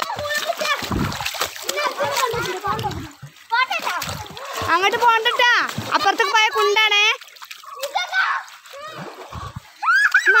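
Children's voices calling and shouting, with splashes of water.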